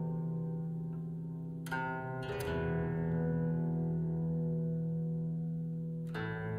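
Alto zither (Altzither built by Ulrike Meinel) played in a slow improvisation: a low bass note rings on steadily while a cluster of plucked notes about two seconds in rings out and slowly fades.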